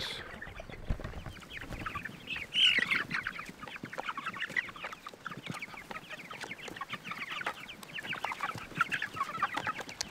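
A flock of white chickens feeding on scattered corn, giving many short, high, overlapping calls, with small ticks throughout.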